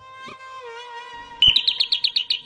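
A held note of background music, then about one and a half seconds in a short thump and an electronic doorbell sounding a rapid run of high chirps, about nine a second.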